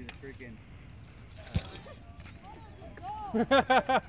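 A BMX bike lands a bunny hop on concrete with a single sharp knock about a second and a half in. Near the end a person laughs loudly in rhythmic bursts.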